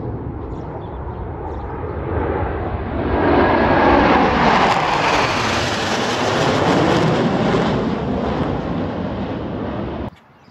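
Jet noise from the Blue Angels' six F/A-18 Super Hornets flying over in formation, with twin turbofan engines on each jet. It builds over the first three seconds, is loudest through the middle, and eases slightly toward the end.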